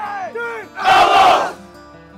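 Football players in a huddle shouting together, several voices at once, then one loud group yell about a second in.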